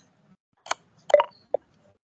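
Three short electronic blips from an online chess game as a piece is moved, the middle one the loudest.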